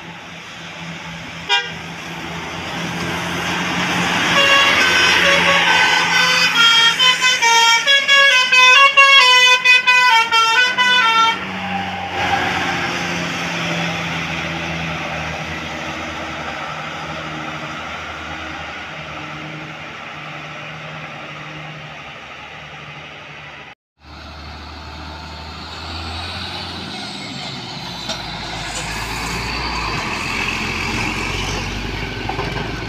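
A tour bus's multi-tone musical "telolet" horn plays a quick tune of changing notes for about seven seconds. The bus's engine follows as it drives past.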